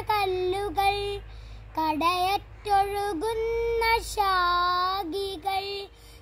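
A young boy singing a Malayalam poem (padyam) solo and unaccompanied, in long held notes that glide between pitches, with short breaks for breath between phrases.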